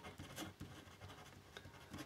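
Pen writing on paper: a run of faint, short scratching strokes as a word is written out by hand.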